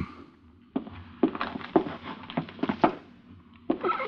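Radio-drama sound effect of footsteps in a small room: a run of short, uneven steps that starts about a second in.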